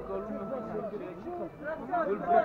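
Indistinct voices of people talking among themselves, with no clear words.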